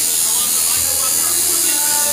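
Tattoo machine buzzing steadily while needling skin.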